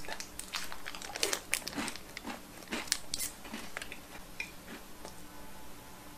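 A person biting and chewing a Lotte Vintz chocolate biscuit close to the microphone: a run of crisp crunches, thick for the first three seconds or so, then thinning out and fainter.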